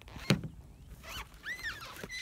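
A bird gives two short calls, each rising and falling in pitch, about a second in and again about half a second later. Early on there is a single sharp knock as gear is handled, the loudest sound here.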